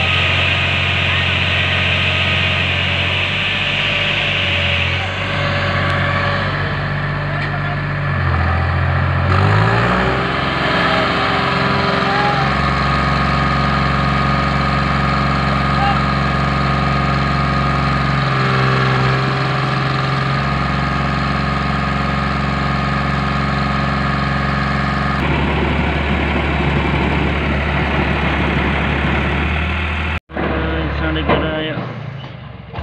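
Tractor engine running hard while towing a jeep stuck in mud, its pitch shifting several times and climbing once as it revs, about eight to ten seconds in. Voices of the people around are heard with it.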